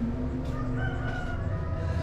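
A rooster crowing: one drawn-out call, fainter than the voices around it.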